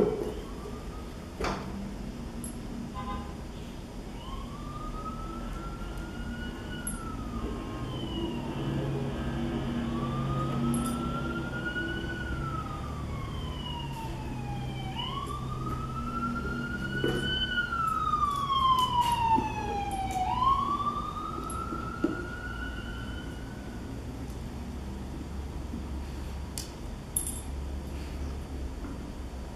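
An emergency vehicle's siren wailing in slow rising-and-falling sweeps, over a low rumble of engine noise, loudest about two-thirds of the way through before fading. A few sharp clicks and knocks come in between.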